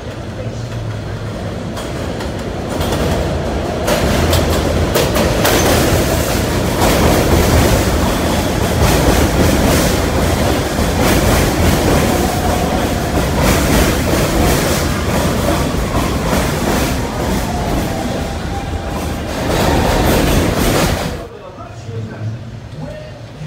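New York City Subway train pulling into an elevated station. The rumble builds over the first few seconds as it approaches, then the cars roll alongside the platform, with wheels clicking over rail joints and a faint squealing tone. The sound drops off abruptly near the end.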